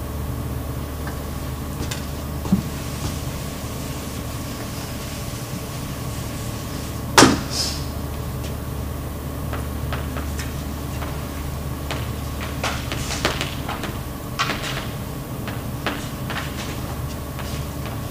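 Chalk writing on a blackboard: short taps and scrapes of the chalk in scattered clicks through the second half, over a steady room hum. A single sharp knock comes about seven seconds in.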